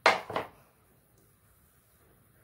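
A short breath puffed out through pursed lips, in two quick bursts close to the microphone.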